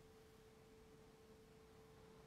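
Near silence, with only a faint steady single-pitched tone held over low hiss.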